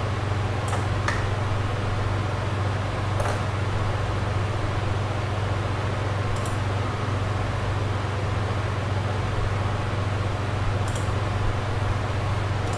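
Steady low hum and hiss of a computer or recording setup, with about six short mouse clicks scattered through.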